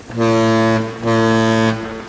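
A cartoon ship's horn sounds two low, steady blasts in quick succession, each lasting under a second, as a sailing ship approaches a bridge.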